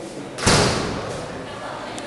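A single loud slam about half a second in, echoing briefly before it dies away.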